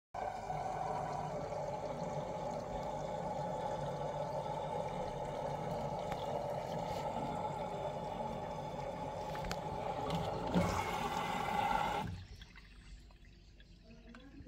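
LG front-load washer dryer filling with water: a steady rush of water into the machine that cuts off suddenly about twelve seconds in. The cycle is running normally with its new door lock switch.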